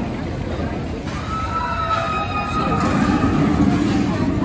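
Amusement-park crowd voices over a steady rush, with a steel roller coaster train running on its track, growing a little louder in the second half.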